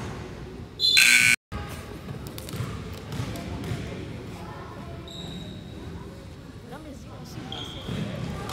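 Gym scoreboard buzzer sounding once, loud and brief, about a second in. Then crowd chatter and a basketball bouncing on the hardwood floor.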